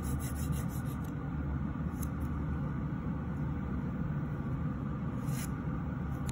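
Steady low hum of a nail dust collector fan running under the hands. A diamond hand file rasps across a fingernail in a quick run of strokes in the first second, with a few single strokes later.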